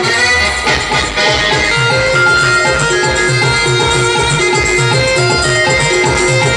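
Timli dance music played live on electronic keyboards: a held, sustained melody over a steady, fast beat.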